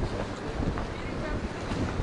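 Wind buffeting the microphone outdoors, a steady uneven low rumble, with faint voices underneath.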